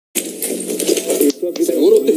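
Indistinct voices with a few light clicks, starting just after a brief dropout at a cut.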